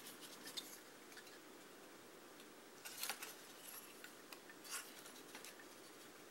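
Near silence broken by a few faint clicks and taps of small toy parts being handled: a tinplate bus body and its wooden seat unit on a metal strip. The clearest clicks come about three seconds in and again near five seconds.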